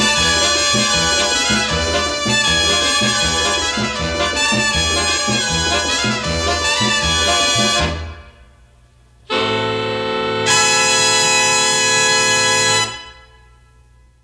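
The closing bars of a 1951 Latin big-band rumba recording: the band plays with brass over a steady bass pulse and breaks off about eight seconds in. After a short gap it ends on a long held brass chord that dies away.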